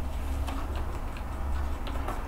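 Quiet room tone: a steady low hum with a few faint, light ticks at uneven intervals.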